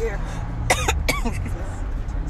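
A woman sick with the flu coughs twice in quick succession, about a second in. Under the coughs is the steady low rumble of a moving car's cabin.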